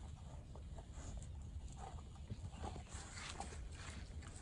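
A dog chewing on a small watermelon, with faint, irregular crunches and wet clicks as it bites into the rind.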